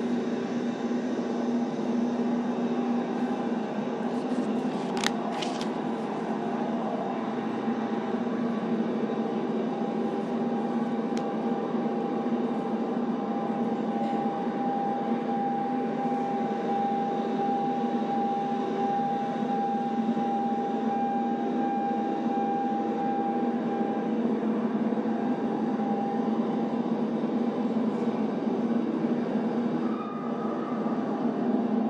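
Steady rumbling noise like a moving vehicle's road noise, with a faint steady tone through the middle and two brief sharp clicks about five seconds in.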